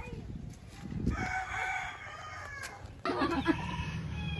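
A rooster crows once, a drawn-out call of about a second starting about a second in.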